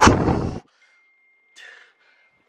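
A short burst of handling noise lasting about half a second, cutting off suddenly into near silence. A faint, thin, steady high tone hangs in the quiet, with a soft puff of noise near the end.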